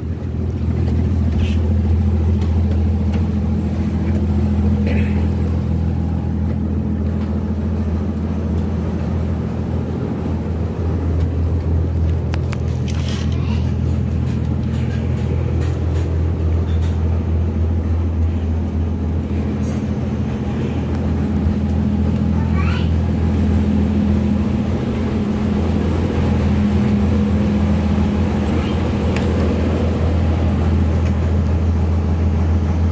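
Houseboat's engine running with a steady low drone.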